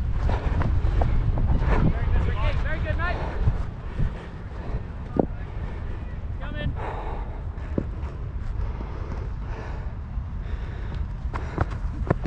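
Wind rumbling on a chest-mounted action camera's microphone, heavier for the first few seconds and then easing, with a couple of sharp clicks. Faint voices of players call across the field.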